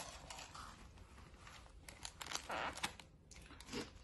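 Foam takeout clamshell being opened and handled: faint rustling and a few light clicks.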